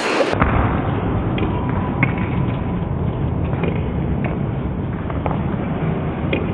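A table tennis rally: the celluloid ball clicks faintly off bats and table at irregular short intervals. The clicks sit under a loud, steady low rumbling noise that starts about a third of a second in.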